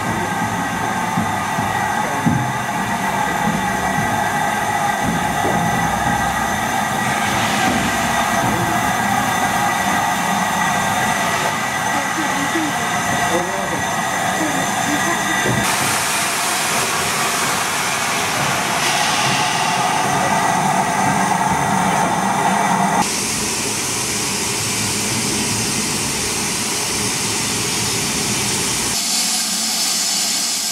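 LMS Black Five 4-6-0 steam locomotive standing at a station platform, with steam hissing steadily from it and people talking nearby. The hiss shifts abruptly in strength and pitch about halfway through and again about two-thirds through.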